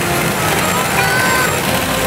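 Steady din of a pachinko parlor: a continuous wash of machine noise, with a few faint short electronic tones from the machines.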